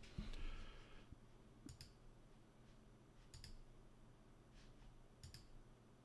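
Near silence with three faint, sharp clicks, evenly spaced just under two seconds apart.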